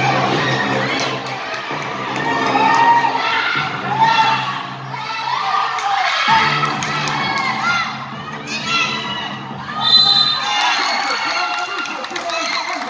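Basketball crowd shouting and cheering, with many high young voices, rising to louder swells a few times.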